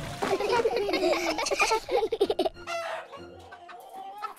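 Several chickens clucking in a quick flurry of short calls that thins out after about two and a half seconds.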